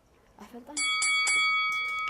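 A bell struck about three times in quick succession, starting about three-quarters of a second in, its high ringing tones held on past the end.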